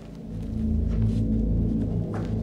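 Dark, low film-score drone: deep sustained tones that swell in loudness about half a second in and hold there.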